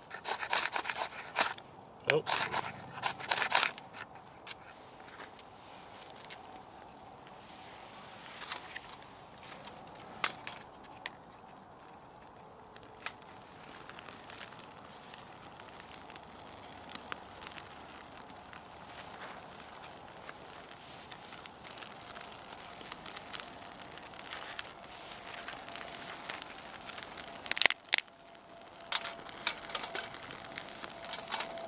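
Ferro rod scraped hard several times in the first few seconds, throwing sparks onto birch bark shavings. Then the lit bark and small sticks crackle faintly in a folding metal Bushbox stove, with a faint steady drone of a helicopter passing over in the second half. There is a brief loud rustle near the end.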